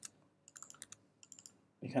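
Keystrokes on a computer keyboard: two short runs of light clicks, about half a second in and again just after a second.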